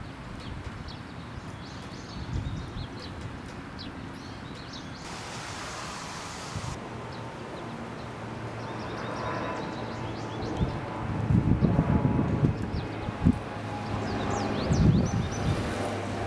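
Outdoor ambience: small birds chirping in short calls throughout, and wind buffeting the microphone in loud gusts in the second half. A steady low engine hum comes up in the second half.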